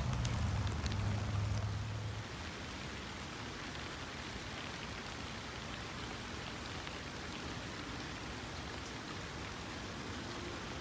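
Steady rain falling on a garden, an even hiss. A louder low hum fades out in the first two seconds.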